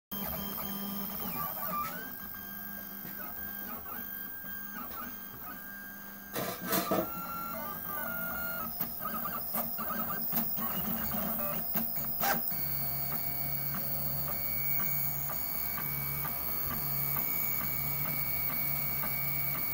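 Mendel90 3D printer's stepper motors running as it prints, their tones jumping between pitches as the axes start, stop and change speed. After about twelve seconds it settles into a steadier, evenly repeating hum.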